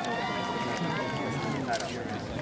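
A person's voice holding one long drawn-out call for about a second and a half, with a short knock near the end.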